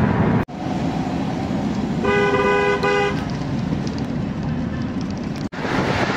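Road and engine noise inside a moving car, with a vehicle horn sounding for about a second, two seconds in. The sound drops out for an instant twice.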